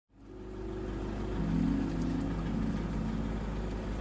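Low steady rumble of a car cabin, fading in from silence, with faint held tones that shift pitch every second or so.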